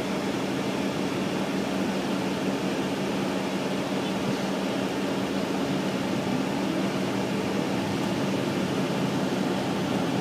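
Steady engine drone and road noise inside a 2006 MCI D4500CL coach bus in motion, with a faint rising whine about six seconds in.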